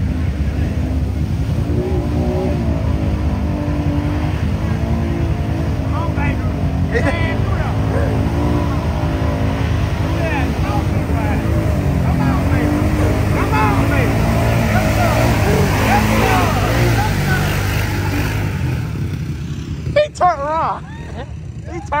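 ATV engines running: a close engine's steady low rumble under a quad revving up and down as it churns through a deep mud hole, with its pitch rising and falling. The engine sound eases near the end.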